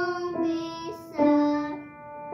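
Upright piano playing a simple single-note melody: three notes struck one after another, each ringing and fading, stepping down in pitch.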